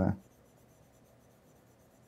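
Near silence: faint room tone after the last syllable of a man's word fades out at the very start.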